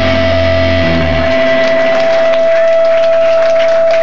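Live rock band's song ringing out at its end: electric guitar and bass hold a chord, the low bass notes stop about a second in, leaving a single steady high tone from the guitar amp, with scattered clapping starting in the second half.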